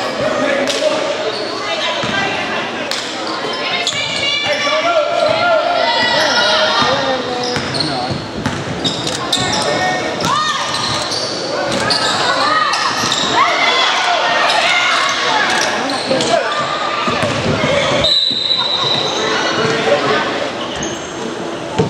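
Voices of spectators and players in a gymnasium during a basketball game, with a basketball bouncing on the hardwood court, all echoing in the large hall.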